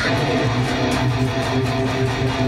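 Electric guitar played through the Neural DSP Fortin NTS amp-simulator plugin: a chord struck at the start and left to ring out steadily.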